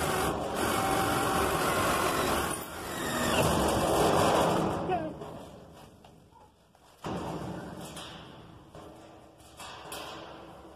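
Cordless drill boring a hole through sheet steel, running for about five seconds with a change partway through, then stopping. A fainter sound starts suddenly about seven seconds in and dies away.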